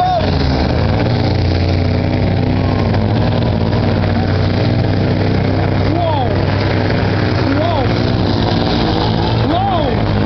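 Volvo FH16 pulling truck's 16-litre straight-six diesel running flat out under full load as it drags a weight-transfer sled down the track, a loud steady drone held at high revs.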